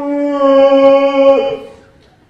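A man's voice wailing on one long, held, fairly high pitch, a loud mock howl of someone crying or yelling. It breaks off and fades out about a second and a half in.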